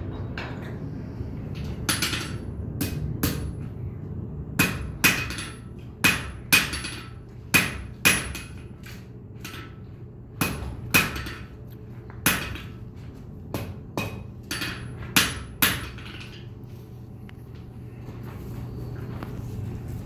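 Blacksmith's hand hammer striking hot steel on an anvil: about twenty ringing blows in irregular clusters, stopping some four seconds before the end.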